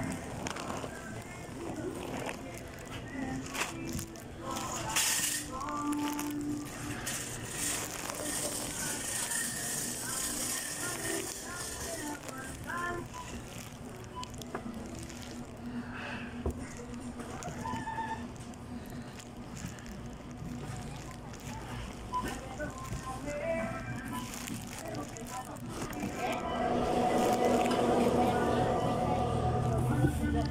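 Grocery store ambience: indistinct chatter of shoppers and staff with music playing in the background, getting louder near the end.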